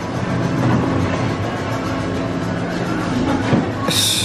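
Steady din of a busy shop: background music under a dense wash of indistinct room noise.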